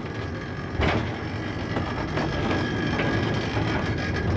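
A cable-hauled funicular car running along its rail track: a steady rumble of steel wheels on the rails, with a faint high whine and a single knock about a second in.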